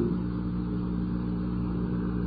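Steady low hum of several even tones with faint hiss: the background noise of an old audiocassette lecture recording.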